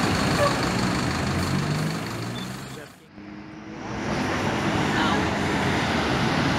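Diesel city bus pulling away, its engine note rising, fading out about halfway through; after that, steady street traffic noise.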